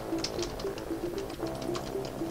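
Computer keyboard keys clicking as a short phrase is typed, over quiet background music with a repeating melody.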